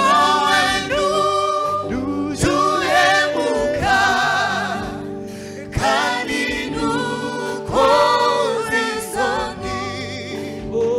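Rwandan gospel worship team singing together in harmony, male and female voices, with a live band of drums and electric guitar underneath.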